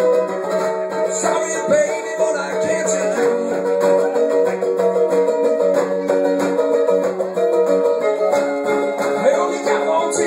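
Mandolin played as a solo instrumental break: a quick, continuous run of picked notes.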